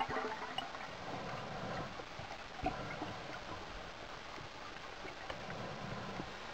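Underwater ambient noise picked up by a camera in a dive housing: a steady hiss sprinkled with faint clicks and crackles, with one sharper click about two and a half seconds in.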